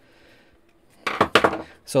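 A brief, loud clatter of small hard parts about a second in: small screws and a plastic robot chassis being handled on a desk.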